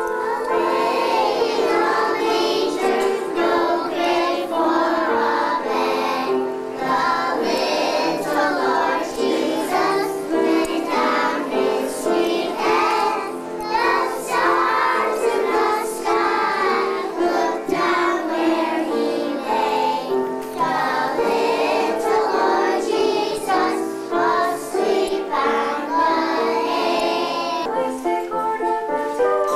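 A group of young children singing together as a choir, a continuous song of held notes that starts abruptly.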